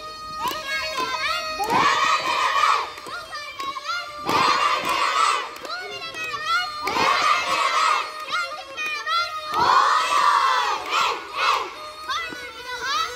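Crowd of children shouting together in loud bursts, four times, about every two to three seconds, as they dance a horon. Under the shouts, a tulum (Black Sea bagpipe) plays a quick horon tune over its steady drone.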